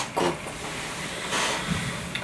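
A man's voice says one short word in Japanese, then pauses over a steady faint background hiss, with a brief breath-like rush of air about one and a half seconds in.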